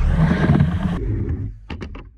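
Skateboard wheels rolling across a mini ramp, a steady rumble that cuts off abruptly about a second in. It is followed by a few sharp clacks of the board and trucks on the ramp.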